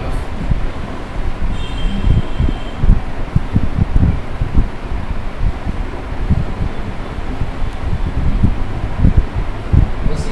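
Wind buffeting the microphone: an irregular low rumble that rises and falls, with a faint high tone for about a second, about two seconds in.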